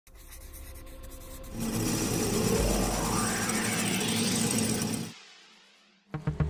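Intro sound-design riser: a faint scratchy texture swells about one and a half seconds in into a loud noisy rush with a rising sweep and a deep rumble, then fades away to silence shortly before the end.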